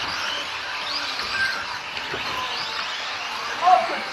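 Small electric motors of micro-scale RC race cars whining as they race, rising and falling in pitch, over a background of voices in the hall.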